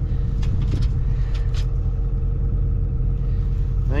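John Deere 9300 tractor's diesel engine idling steadily: a low, even rumble with a constant hum.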